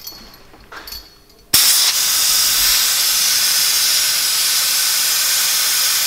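Venturi-type coolant vacuum-fill tool hissing as compressed air rushes through it. The hiss starts suddenly and loudly about one and a half seconds in, then holds steady. The tool is pulling a vacuum on the car's cooling system to check for leaks before it is refilled with coolant.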